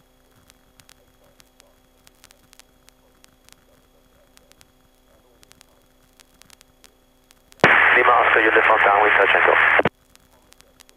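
A faint steady hum on the aircraft's radio and intercom feed, then, about three-quarters of the way in, a loud two-second aviation radio transmission: a voice thin and narrow like a telephone, cutting off abruptly.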